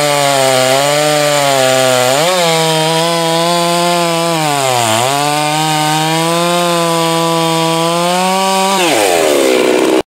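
Large Husqvarna chainsaw cutting through a thick log at full throttle, its engine pitch sagging briefly under load a couple of times. Near the end the engine winds down sharply as the throttle is let off.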